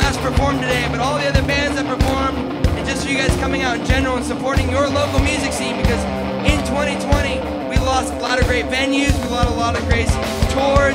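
Live rock band playing: drums keep a steady beat under bass and electric and acoustic guitars, with a voice singing a wavering melody over them.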